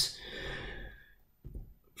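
A man's soft breath out between sentences, fading away within the first second, then near silence with a brief faint breath just before he speaks again.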